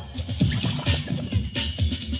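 UK garage dance music from a live club DJ set, with a deep bassline and a steady beat and no MC vocal over it.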